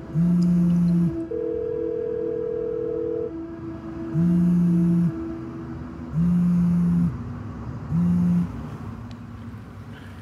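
A mobile phone on vibrate buzzing with an incoming call: four low buzzes, each a second or less, the last one shorter. They play over a faint steady musical drone, and a single held higher note sounds between the first two buzzes.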